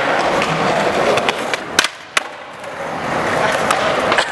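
Skateboard wheels rolling over rough concrete, with two sharp clacks about two seconds in, less than half a second apart. The rolling then drops away briefly and builds again near the end.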